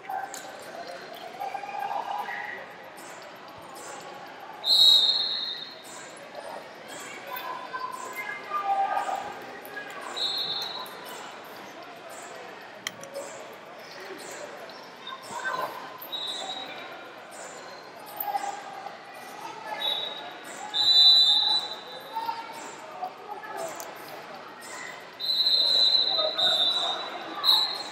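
Athletic shoes squeaking on wrestling mats in a large gym hall: several short, high-pitched squeaks at irregular intervals, over faint voices.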